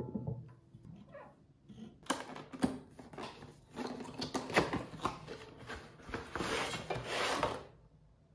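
Cardboard box being handled and a frying pan slid out of it: rough scraping and rustling of cardboard with several small knocks, starting about two seconds in and stopping just before the end.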